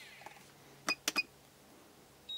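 Three short, high electronic beeps in quick succession about a second in, as a DJI Phantom 3 Professional drone is powered off. A steady electronic whine from the powered drone cuts off at the very start.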